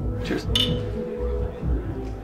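Glass bottles clinking together once, a short ringing chink about half a second in, over background music with a deep bass.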